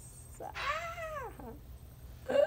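A person's high-pitched squeal of suspense, rising then falling over about a second, as a block is worked loose from a wobbly Jenga tower.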